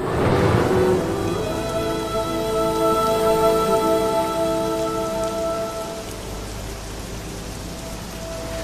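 Steady rain, with a soft music score of held notes coming in underneath about a second and a half in.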